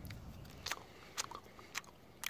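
Faint, crisp clicks and crunches of someone chewing a fresh meadowsweet leaf, a handful of separate crunches spread over two seconds.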